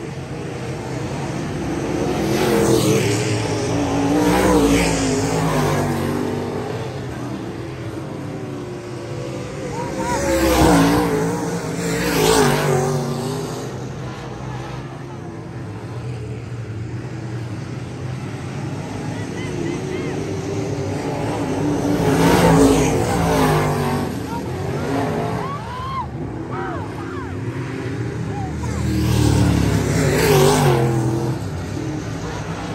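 Dirt-track race cars' V8 engines running around the oval. The sound swells and fades several times as cars pass close by the fence, with the engine pitch rising and falling on each pass.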